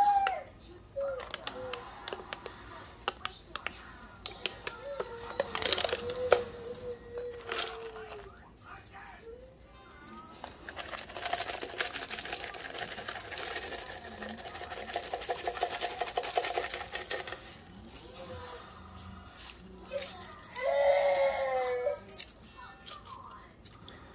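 Foil seal peeled off a cardboard canister of crispy fried onions, then the dry onions shaken out of the can onto a casserole, with many small clicks and crackles. A voice and some music are heard at times over it.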